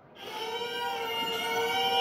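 A bluegrass string band's instrumental lead-in fading in from silence, with a fiddle holding long, steady notes.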